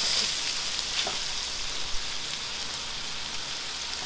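Onion, mushrooms and wood ear fungus sizzling steadily in hot oil in a wok, with a few light clicks from the plastic stirring spoon.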